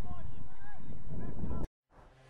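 Wind rumbling on an outdoor microphone, with several short honk-like calls over it. Everything cuts off abruptly near the end.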